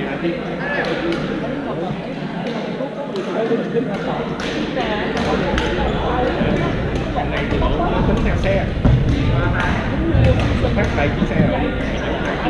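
Badminton rackets striking shuttlecocks in irregular sharp hits across several courts, over a steady babble of players' voices in a large sports hall.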